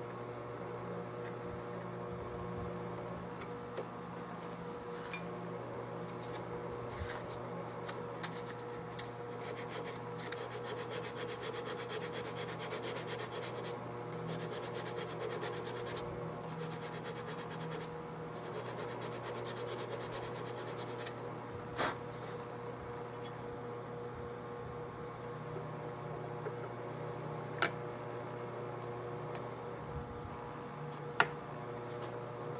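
Small hand tool scraping and paring the Turkish walnut of a gunstock forend channel. A run of quick scraping strokes comes in the middle, over a steady shop hum, and a couple of sharp clicks sound near the end.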